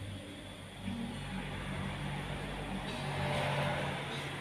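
A motor vehicle passing, its low engine hum steady while the road noise swells louder near the end.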